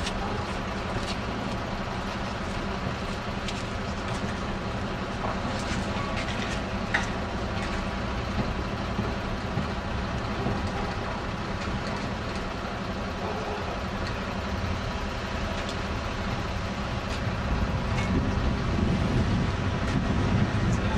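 A Ganz articulated tram hauling a coupled Combino NF12B tram, rolling slowly on rails: a steady rumble with scattered clicks and a brief squeal about seven seconds in. The sound grows louder near the end as the trams pass close.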